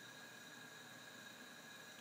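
Near silence: a faint steady hiss with a few thin steady tones under it, room tone.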